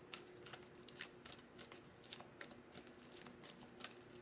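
A deck of oracle and tarot cards being shuffled by hand: faint, irregular soft clicks and flicks of card edges, several a second.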